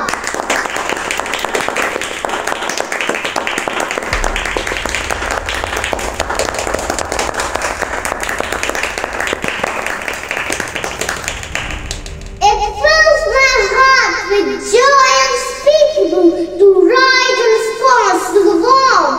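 Applause from a large crowd: dense, steady clapping that runs for about twelve seconds and then stops, after which a boy's voice resumes the speech.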